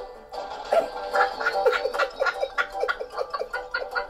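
A person laughing in rapid, pulsing bursts over background music.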